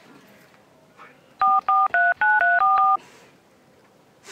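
Touch-tone phone keypad beeps dialing a number: a quick string of about six two-note tones, starting about a second and a half in and lasting about a second and a half.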